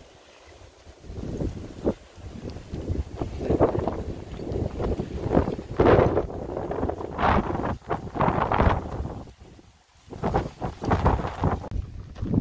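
Wind buffeting the microphone in irregular gusts, rising and falling every second or two, with a brief lull just before the end.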